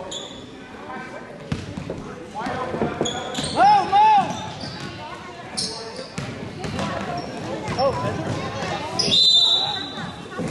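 A basketball is dribbled on a hardwood gym floor with repeated bounces, amid shouting voices that are loudest about four seconds in. A loud, shrill high tone sounds about a second before the end.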